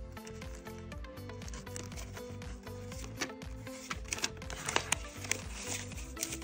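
Background music with a steady low beat, with the crisp rustles and flicks of paper banknotes being handled and counted by hand, several sharper snaps of the bills between about three and five seconds in.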